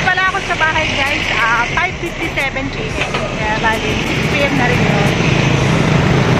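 Road traffic noise and wind on the microphone from a bicycle ride in traffic, with a voice heard faintly over it early on. A passing vehicle's engine rumble grows stronger in the second half.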